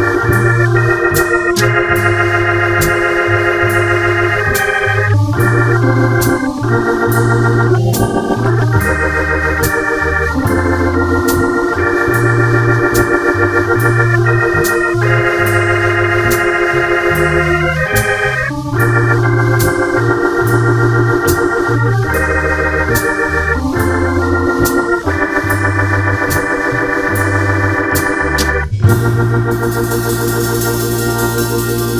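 Hammond B3 tonewheel organ through a Leslie speaker playing a slow jazz ballad: held chords over a moving bass line, with drums keeping a light, steady beat. Near the end the music breaks briefly and comes back in on an accented hit.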